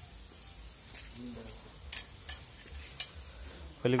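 Faint rustling and a few scattered clicks from a plastic sack being carried and swung by hand.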